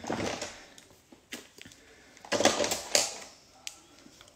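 Makeup items being handled and rummaged through: rattling and a few sharp clicks as a compact palette and brush are picked up, loudest between about two and a half and three seconds in.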